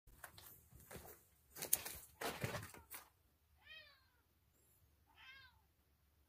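Rustling and several knocks for the first few seconds, then a cat meowing twice, two short calls about a second and a half apart.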